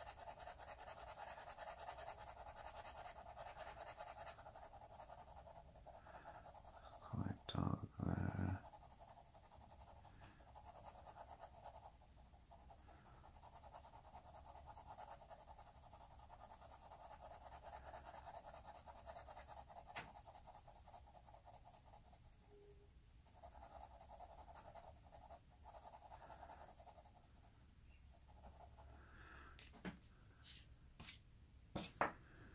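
Pencil shading on paper: a soft, steady scratching of strokes that pauses and resumes. About seven seconds in there is a brief, much louder burst of noise.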